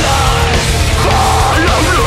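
A heavy metal band playing live at full volume: distorted electric guitars, bass guitar and drums, with a dense, driving low end.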